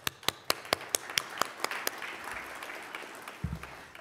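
Audience applause led by sharp claps close to the microphone, about four to five a second for the first two seconds. The applause then thins to a soft patter and dies away.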